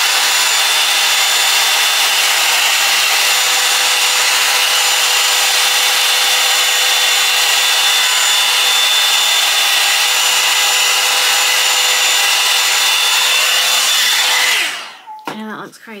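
Bondi Boost Blowout Tool hot-air brush running steadily, blowing air through the hair with a faint constant motor whine under the rush of air. It is switched off and winds down about fourteen and a half seconds in.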